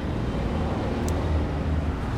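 Steady low rumble of city traffic, with one brief faint tick about a second in.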